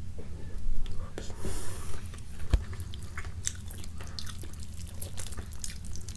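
Close-miked wet mouth sounds and chewing, with the soft tearing and squelching of rotisserie chicken meat and skin being pulled apart by hand. Many small clicks, and one low thump about two and a half seconds in.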